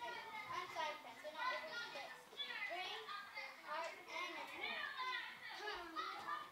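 Many children's voices talking and calling out at once, overlapping chatter with no single clear speaker.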